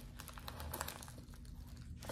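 Faint crinkling of plastic packaging being handled, with a few light crackles in the first half.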